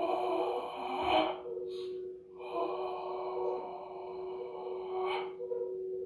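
A person breathing out forcefully through pursed lips, as in a breathing exercise: a short hissing exhale, then a longer one of about three seconds. A steady low hum runs underneath.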